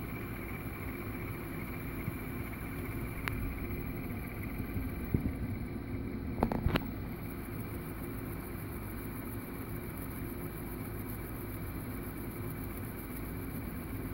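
VCR tape transport winding an exposed VHS tape at full speed: a steady mechanical whir of the reel motor and spinning reels with a thin high whine over it, "a bit of noise". A few sharp clicks come about a quarter and half way through.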